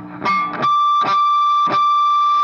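Distorted electric guitar sounding a harmonic high on the G string: a few pick strokes, then a single high note rings out steadily from about half a second in.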